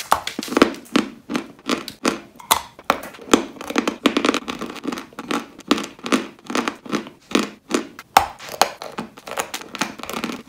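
Chewing a dry, crumbly white block: a steady run of dry crunches, about two or three a second, with one sharper crack a little after eight seconds.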